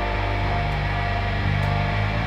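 Live rock band playing an instrumental passage, with electric guitar and bass holding long low notes that change a couple of times.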